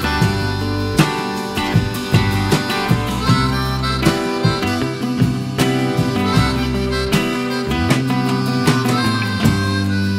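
Instrumental passage: a harmonica played in a neck rack, with long held notes over a fingerpicked acoustic guitar.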